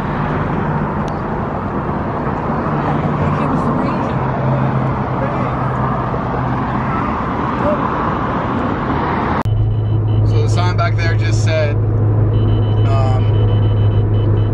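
Steady vehicle and traffic noise with a low engine hum. About nine and a half seconds in it cuts abruptly to the steady low drone of a car's cabin on the move, with brief voices over it.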